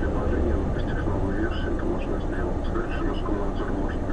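Steady low drone of a car's engine and road noise heard inside the cabin, with a car-radio voice talking indistinctly over it.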